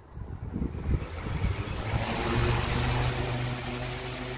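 BILT HARD 18-inch industrial wall fan switched on at its low speed and spinning up. A rush of air builds over the first two seconds, and a steady motor hum joins in and holds.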